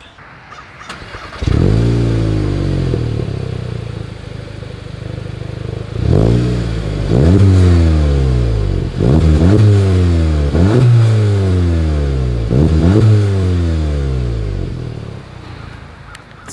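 2021 Volkswagen Golf GTI's turbocharged 2.0-litre four-cylinder heard at its dual exhaust outlets: after a quiet start it revs once and settles to idle, then is blipped about seven times in quick succession, each rev climbing sharply and falling back. The sound dies away near the end.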